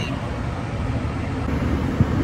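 Steady low rumble inside a car cabin with the engine running.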